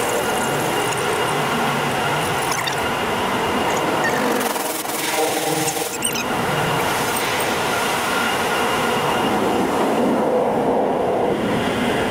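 Automatic drive-through car wash heard from inside the car: a steady rush of water spray and spinning wash brushes sweeping over the windshield and body, with thin high tones running over the noise.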